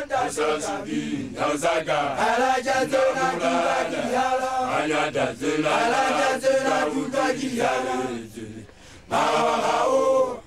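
A group of Basotho initiates (makoloane) chanting together, unaccompanied, in call-like phrases. The voices fall away briefly about eight seconds in, then come back.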